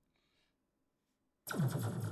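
Near silence, then about one and a half seconds in a synthesized laser-blaster sound effect fires from a DJ software sampler: a sudden loud zap that drops in pitch.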